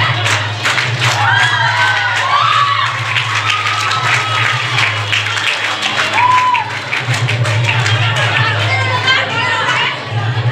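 Dance music playing over a hall sound system while a crowd of young women cheers, with high-pitched whoops and shouts over it, the loudest in the first few seconds and again around six seconds in.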